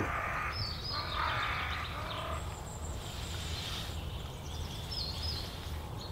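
Woodland ambience: a few short, high bird chirps over a steady low background rumble.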